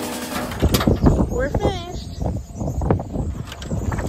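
Background music stops shortly after the start. Then comes rough outdoor noise with a voice calling and several sharp knocks and clatters.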